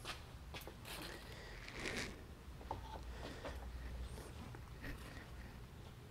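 A few faint, scattered clicks and rustles of hands handling objects at a screen-printing press, including a piece of card being picked up to scrape off ink.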